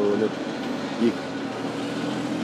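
A steady low engine hum, growing a little louder near the end, under a man's speech.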